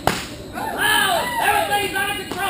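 A single sharp crack right at the start, then a run of high, arching whoop-like calls from a voice, each rising and falling in pitch.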